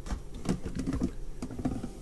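Light, irregular rustling and clicking as a hand digs into a plastic bin of uncooked rice and lifts out a plastic mesh bag of dried chili peppers: grains shifting and the bag crinkling against the bin.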